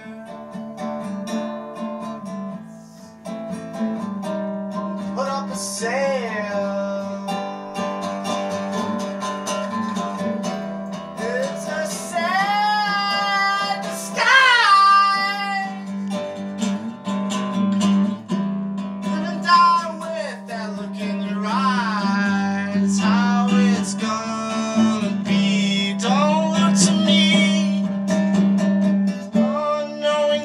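A man singing while strumming a nylon-string classical guitar in a live solo performance, his voice reaching its loudest held notes around the middle.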